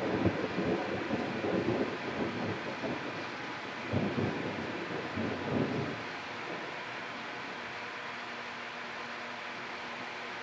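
Thunder rolling and rumbling, swelling twice about four and five and a half seconds in, then dying away about six seconds in, leaving a steady hiss.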